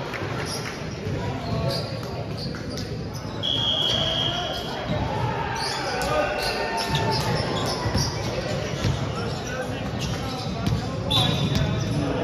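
Echoing sports-hall sound between volleyball rallies: players' voices and chatter, with a ball bouncing on the wooden court several times.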